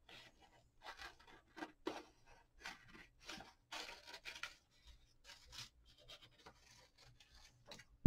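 Scissors cutting through paper: a string of quiet, short snips, several a second, with the paper rustling as it is turned.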